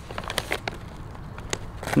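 Cheddar barbecue chips being chewed, scattered sharp crunches and crackles at irregular intervals.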